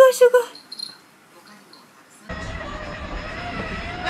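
A high-pitched voice holding short sung notes stops about half a second in. After a quieter gap, a steady hum with a wavering whine starts suddenly, from a battery-powered toy car with lights.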